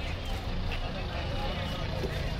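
Busy street-market ambience: a steady low rumble of road traffic under background voices talking.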